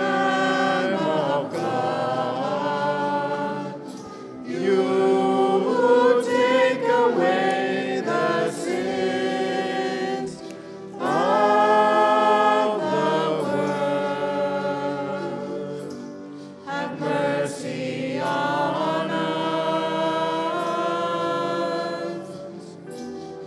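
Small church choir singing a hymn in phrases, with short breaks about four, ten and sixteen seconds in.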